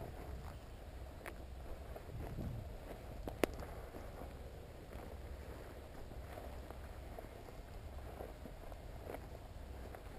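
Footsteps of a person walking across a grassy field, under a steady low rumble, with one sharp click about three and a half seconds in.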